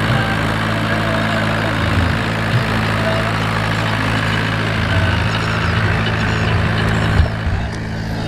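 Tractor's diesel engine running steadily with a low, even drone.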